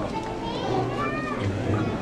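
Indistinct children's voices chattering in a large room, with no music playing.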